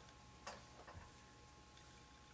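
Near silence: room tone with a faint steady hum and two faint clicks, about half a second and a second in.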